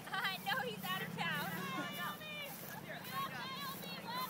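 Several people's voices calling out and talking indistinctly at a distance, in short overlapping bursts, over a steady low hum.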